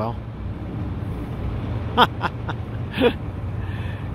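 Steady low hum of an idling diesel engine. A couple of short voice sounds and faint clicks come about two and three seconds in.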